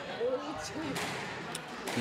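Squash ball being struck by rackets and hitting the court walls during a rally: two sharp knocks about a second apart, with faint voices underneath.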